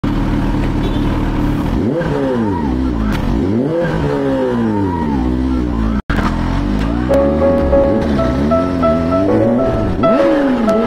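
Kawasaki Z H2 motorcycle's supercharged inline-four engine revving, its pitch rising and falling three times. About a second into the second half, music with steady sustained notes comes in over the engine.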